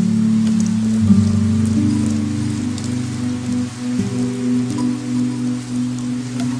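Steady heavy rain pattering on wet pavement. Under it runs soft background music of sustained low chords that change every second or so.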